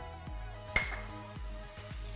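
A single sharp clink of a metal utensil against a glass mixing bowl, ringing briefly, about three-quarters of a second in, over soft background music.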